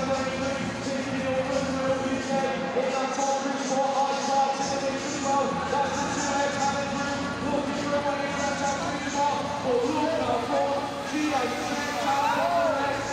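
Race commentary over an arena public-address system, the voice echoing and unclear in the large hall, over a steady tonal background.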